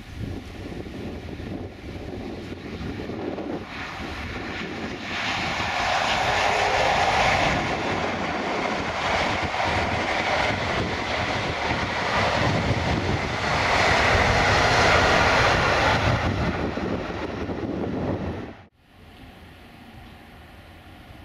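GWR High Speed Train (InterCity 125) passing at speed: the Class 43 diesel power car running under power, with the rumble of the train on the rails. It builds to its loudest from about five seconds in, then cuts off suddenly near the end.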